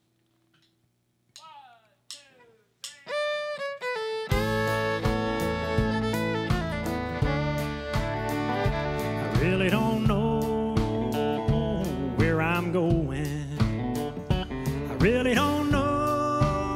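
A country band of fiddle, electric bass, acoustic guitar and pedal steel guitar starting a song: a few sparse notes with sliding pitch open it, then about four seconds in the full band comes in and plays on with a steady beat and sliding string lines.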